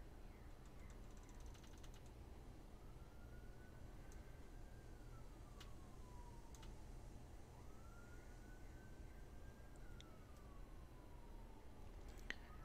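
Tormach PCNC mill making a finishing pass in aluminium, heard faintly: a machine whine that rises in pitch, holds, then slowly falls, repeating every few seconds, with a few sharp ticks.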